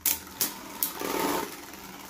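Two Beyblade Burst spinning tops, World Spryzen S6 and a Glide Ragnaruk, whirring against each other in a plastic stadium. Three sharp clacks sound in the first second as they strike.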